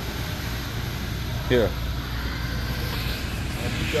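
Steady low rumble and hiss of background noise in a large indoor hall, with a single short spoken word about a second and a half in.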